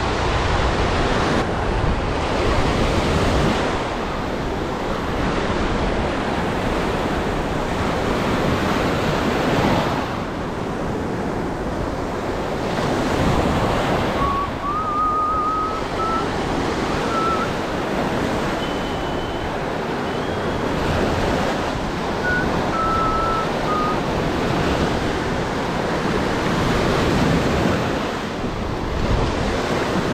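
Ocean surf breaking and washing up and back over the sand, in surges that swell and ease every few seconds.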